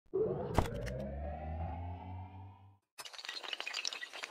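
Animated logo-intro sound effects: a sustained low tone with a sweep rising in pitch and a sharp hit about half a second in, fading out by about three seconds. After a short gap comes a dense, shattering clatter of many small hard clicks.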